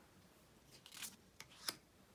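Tarot cards being handled: a short papery brushing as a card is slid off and laid onto a stack, then two light clicks of card on card, the second the sharpest.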